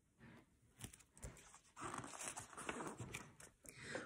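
Faint rustling and handling noise from a picture book being lowered: a few soft clicks, then a brief hiss of paper.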